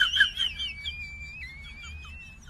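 A thin, high whistle held steady for about two seconds, with a small step up in pitch partway through.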